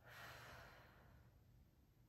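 A woman's soft, sigh-like exhale that starts at once and fades away over about a second.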